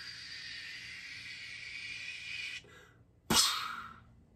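A person blowing a long, steady breathy hiss into cupped hands for about two and a half seconds. Near the end comes a single sudden burst, louder than the hiss, which dies away within about half a second.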